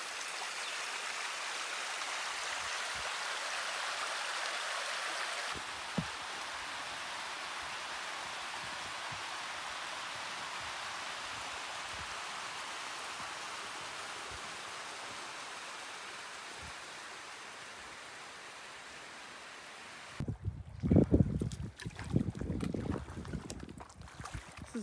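Steady rush of a mountain creek flowing over rocks. About twenty seconds in, it gives way to gusts of wind buffeting the microphone.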